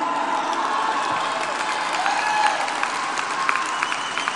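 A large seated audience applauding: steady, even clapping that eases off slightly near the end.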